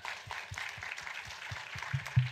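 Audience applauding: many hands clapping together in a dense, steady patter.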